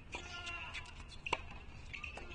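Tennis ball struck by rackets during a rally: two sharp hits a little over a second apart. A drawn-out vocal cry follows the first hit.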